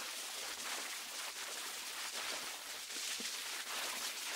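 Surface noise of a damaged home-recorded Wilcox-Gay Recordio acetate disc: a steady hiss with faint scattered crackles between the voices.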